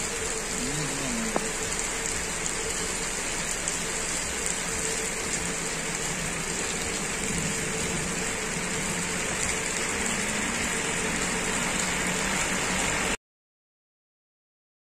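Steady hiss of rain falling on a wet road, with a truck's engine running faintly beneath it. The sound cuts off suddenly near the end.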